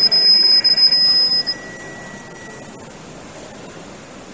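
Mobile phone ringing: a high, steady electronic ringtone that stops about one and a half seconds in, leaving a low steady hiss.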